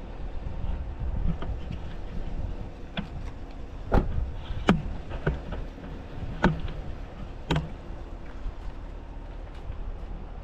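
Low wind rumble on the microphone of a handheld camera, with four sharp knocks of handling noise between about four and eight seconds in.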